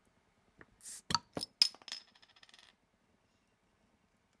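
A small metal object dropped onto a hard surface: a few sharp clinks about a second in, then a high ringing rattle as it settles and stops near three seconds in.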